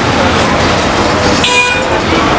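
A short vehicle horn toot about one and a half seconds in, over loud street traffic noise.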